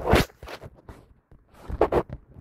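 Handling noise: a short scraping rustle right at the start, then a few light clicks and knocks, and another brief scrape near the end.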